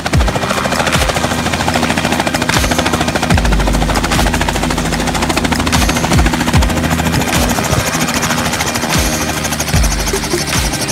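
Rotor of a battery-electric Robinson R44 helicopter chopping rapidly and evenly as it hovers low and settles onto the ground, with a low rumble about a third of the way in.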